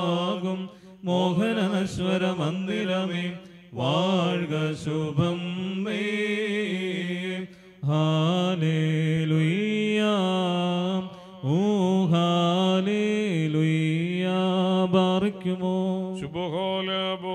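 A male voice chanting a liturgical funeral hymn through microphones and a loudspeaker. It holds long notes that glide up and down, in phrases broken by short pauses.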